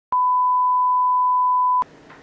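Television test tone played over colour bars: one steady, pure beep held for about a second and a half that cuts off abruptly, followed by faint background hiss near the end.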